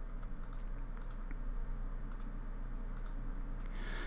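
Computer mouse clicking, about half a dozen scattered clicks as paths and circles are selected in turn, over a low steady hum.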